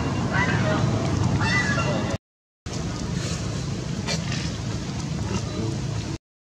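Steady outdoor background noise with a few brief voices in the first two seconds; the sound cuts out completely for about half a second a little after two seconds in, then the background noise resumes.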